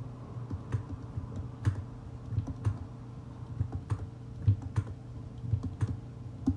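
Irregular clicks of a computer mouse and keyboard, about two or three a second, as the Alt key and mouse button are pressed in turn to sample and paint with Photoshop's clone stamp tool. A steady low hum runs underneath.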